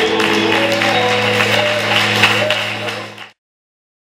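Live gospel music: a man singing a held, wavering line over a sustained low keyboard chord, with short percussive hits throughout. The sound cuts off abruptly about three seconds in, leaving silence.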